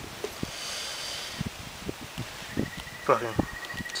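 Handling noise: scattered light clicks, knocks and rustling as multimeter test leads and the camera are handled, with a brief mumbled voice a little after three seconds in and a faint steady high tone near the end.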